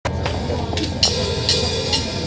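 Live rock band on stage: a few light cymbal strikes, roughly every half second, over sustained low bass and guitar tones.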